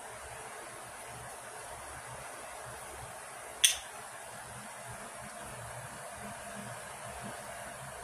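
Steady low room hiss with one sharp click about three and a half seconds in, as a small hard object is set down on the work table.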